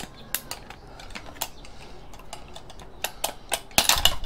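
Scattered light clicks and taps as the plastic bottom cover of an Intel NUC mini PC is worked loose and lifted off the case, with a quick run of louder clicks near the end.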